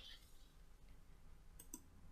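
Near silence with a couple of faint computer mouse clicks about one and a half seconds in.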